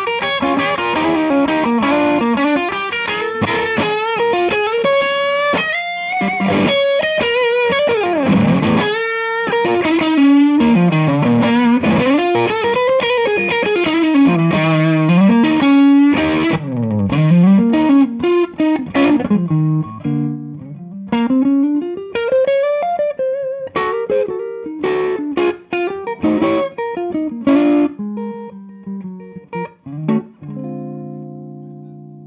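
Electric guitar played through a Jackson Ampworks El Guapo, a 100-watt EL34 tube amp built on the Marshall Super Bass circuit. It starts as a dense, distorted lead with wide string bends on the amp's higher-gain second channel. From a little past halfway it turns to sparser, choppier phrases, with the amp switched back to its first, lower-gain channel.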